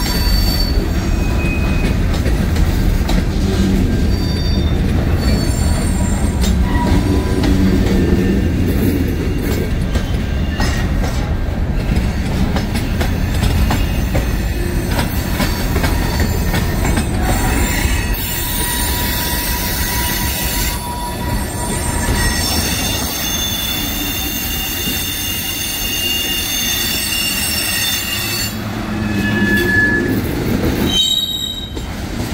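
A freight train of covered hopper cars rolling past close by: a steady rumble of steel wheels on rail, with several thin, high wheel squeals coming and going, most of them in the second half.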